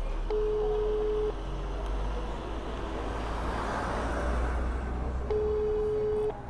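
Telephone ringback tone from a phone on speaker: a steady tone about a second long, twice, about four seconds apart, the outgoing call ringing and not yet answered. A low street-traffic rumble runs underneath.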